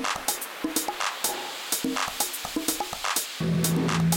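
Live electronic music: a sparse beat of sharp percussive clicks and hits, then about three and a half seconds in a deep, steady bass note comes in and holds under them.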